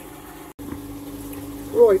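Steady low mechanical hum, typical of an aquarium pump running, cut off for an instant about half a second in, then a spoken word near the end.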